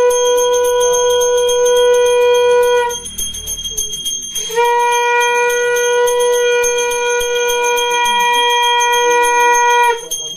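A conch shell (shankha) blown in two long steady notes, the first ending about three seconds in and the second starting a second and a half later and held to the end, over a hand bell rung without pause, as during a Hindu aarti with a lamp.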